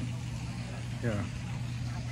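Outdoor background noise: a steady low hum under an even hiss, with a man saying "yeah" briefly about a second in.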